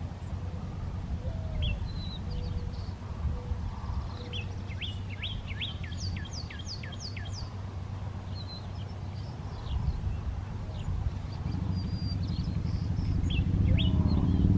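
Male northern cardinal singing a fast series of clear downslurred whistles about a third of the way in, with scattered single chirps before and after. A faint low cooing from a white-winged dove comes early on, over a steady low background rumble.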